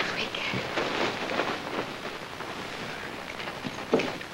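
Brief, indistinct voice sounds in the first second or so, over the steady hiss and crackle of an old optical film soundtrack.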